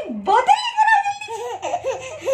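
A baby laughing, a run of quick giggles.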